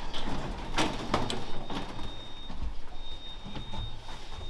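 Elevator doors sliding, with a couple of sharp knocks about a second in and a thin, steady high tone from about halfway.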